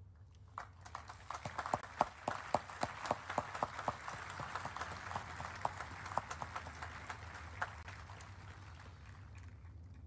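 A large outdoor audience applauding: scattered claps begin about half a second in, swell to a full round, then thin out and die away near the end, over a low steady hum.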